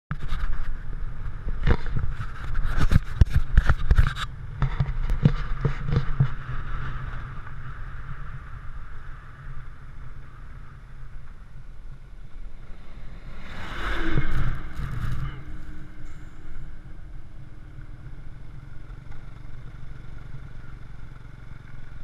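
Motorbike riding on a rough dirt road: a steady low engine and wind rumble, with a run of knocks and bumps on the microphone through the first six seconds. About fourteen seconds in an oncoming vehicle passes with a brief swell of noise.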